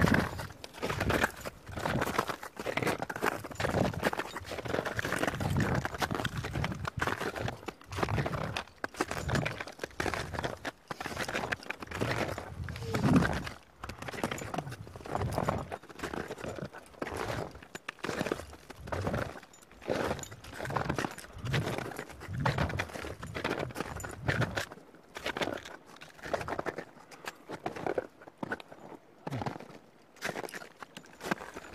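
Boots crunching in snow with trekking poles planted, in a steady walking rhythm of footsteps.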